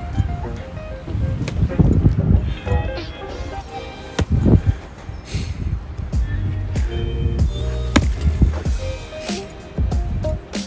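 Background music, with several sharp, unevenly spaced knocks: hammer blows on a burnt, swollen lithium NMC battery cell, which shows no reaction.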